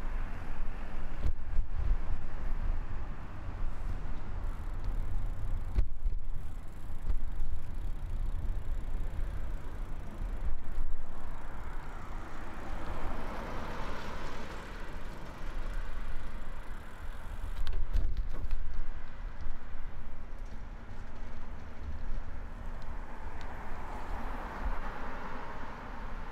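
Street traffic: cars passing on a road, one swelling and fading about halfway through, over a constant low rumble.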